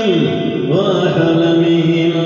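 A man's voice chanting in Arabic through a microphone, drawn out on long held notes: the pitch falls steeply at the start, climbs again under a second in, then holds steady.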